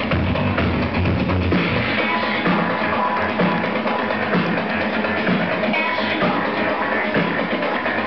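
Loud electronic breakbeat dance music playing over a club sound system, with busy, fast drums. The deep bass drops away about two seconds in, leaving the drums and mid-range to carry on.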